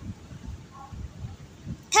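Quiet room background between spoken numbers, with faint low rumble and a few soft knocks. Right at the end a child's voice begins saying the next number.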